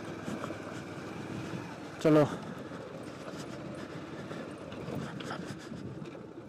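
Motorcycle running steadily at low speed while crossing a shallow, muddy river ford and its gravel bed.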